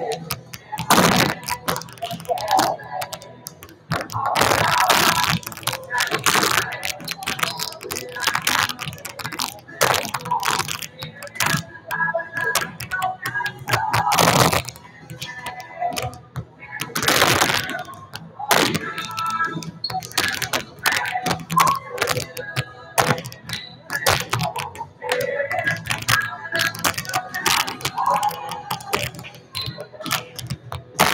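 Volleyballs being hit and passed and bouncing on a gym floor: repeated sharp slaps and thuds at irregular intervals, with music and voices in the background.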